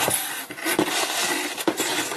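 Cardboard box being opened by hand: cardboard rustling and scraping, with a few sharp knocks.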